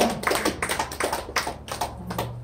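A quick run of light taps or clicks, several a second.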